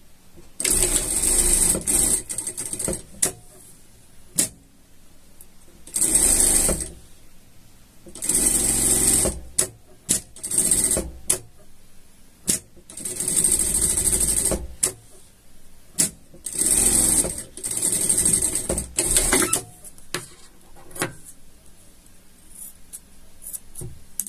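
Industrial single-needle sewing machine stitching a seam in about six short runs of one to two and a half seconds each, stopping and starting between runs, with short clicks in the pauses.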